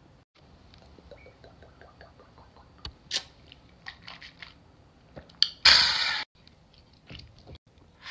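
Quiet lip, mouth and swallowing sounds of a man sipping and tasting moonshine, then one sharp, breathy hiss of air through the mouth for about half a second near six seconds in.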